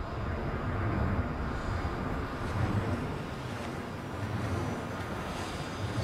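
A steady rushing, wind-like noise with a low rumble underneath, the ambience of a TV drama soundtrack.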